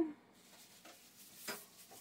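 Quiet room with a few light clicks and knocks of things being handled, the sharpest a brief click about halfway through.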